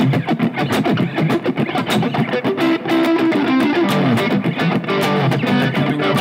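Electric guitar, a Fender Stratocaster, played as a rhythm part: rapid muted, scratchy strums broken up by short two-note shapes on the D and A strings.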